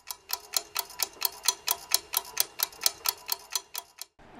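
Quiz-show countdown timer sound effect: fast, even clock ticks, about five a second, over a faint steady tone. The ticking stops near the end.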